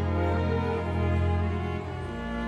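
Slow, sad film score of bowed strings: held violin and cello notes, the chord changing just before the end.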